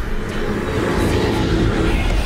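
Sci-fi space-travel sound effect: a loud, steady rushing rumble with a heavy deep low end, as a ship hurtles through a swirling tunnel of light.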